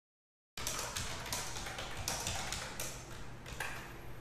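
Typing on a computer keyboard: a run of irregular quick key clicks and taps, starting about half a second in after a brief silent gap.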